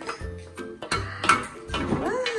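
Background music with a steady bass line and short plucked notes, alongside a few light clicks.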